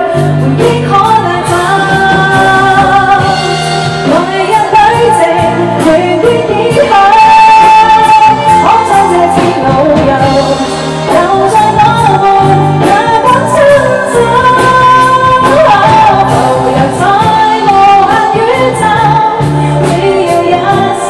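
A woman singing a song live into a handheld microphone, her voice amplified and holding long notes, over a band accompaniment with a steady drum beat.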